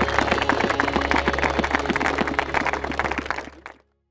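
A group of people applauding, many hands clapping over a steady low hum; it fades out just before the end.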